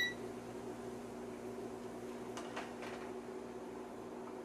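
Steady low electrical hum and fan noise from the powered-up IMSAI 8080 computer. A few faint ticks come about two and a half seconds in as the meter probes touch the card.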